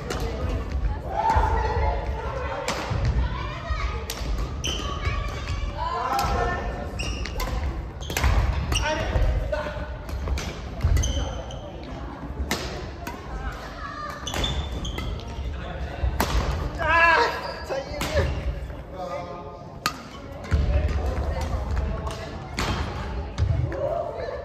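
Badminton being played in a large hall: repeated sharp racket strikes on the shuttlecock and thuds of footsteps on the wooden court floor, with the room's echo. Voices are heard in the hall at times.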